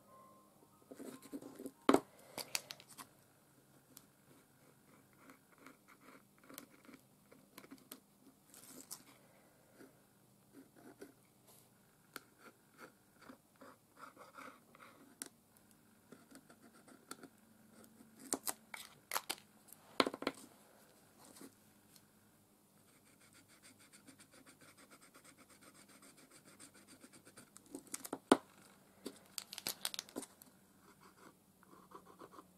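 Faint tabletop handling of art materials: scratching and rustling with a paint marker and paper, broken by a few sharp clicks, about two seconds in, around the middle and near the end.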